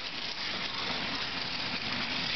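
Water running steadily from a pull-down kitchen faucet, the stream splashing into the sink.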